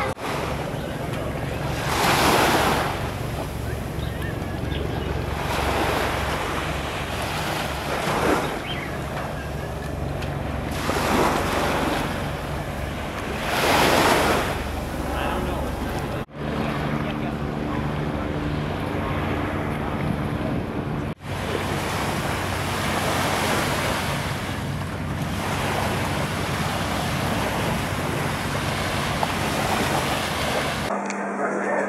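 Surf washing onto a sandy beach, swelling every few seconds, with wind buffeting the microphone. A steady low hum joins in for a few seconds in the middle.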